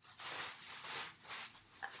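Soft rustling of fabric and a bag being handled, in a few uneven swells.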